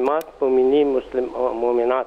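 A man talking over a telephone line, a caller's voice with a narrow, phone-like sound, with one short click just after the start.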